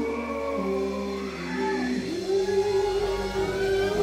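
Live band playing, with a fiddle holding long, sliding notes over bass and guitar.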